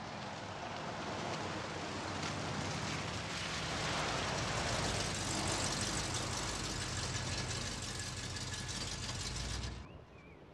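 An early-1970s Dodge Challenger's engine running as the car drives up a wet street, growing louder as it approaches, with tyre hiss on the wet road. It then settles to a steady idle at the kerb and cuts off suddenly near the end as the engine is switched off.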